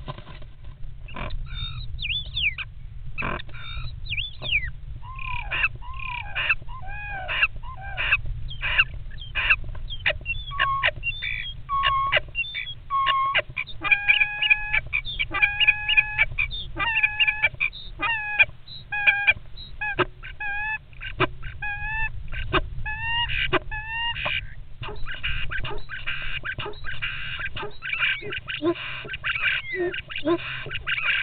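Common starlings calling at close range inside a wooden nest box while fighting over it: a dense run of clicks, whistles and gliding notes. Through the middle comes a stretch of repeated whistled notes, and near the end a denser rattle.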